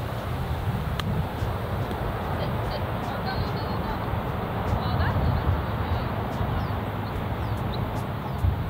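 Steady wind rumble on the microphone, with one light click about a second in from a golf club striking the ball on a short chip shot. Faint bird chirps come through a few seconds later.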